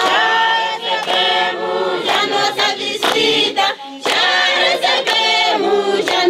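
A group of women singing together a cappella, with hand claps in among the singing.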